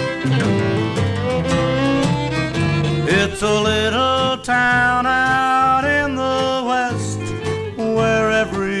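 Instrumental break in a country song: a fiddle plays the lead in held and sliding notes over guitar and bass.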